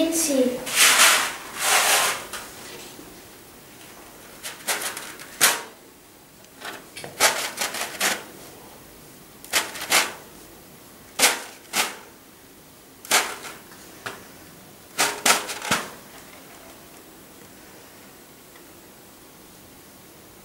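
Short, crisp rustles and scrapes, one or two every second or so, as a hand works seeds into potting soil in a plastic tub. They stop a few seconds before the end.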